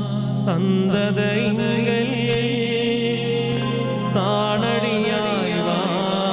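Slow devotional chant: a melody with long pitch glides sung over a steady sustained drone, the low drone dropping away near the end.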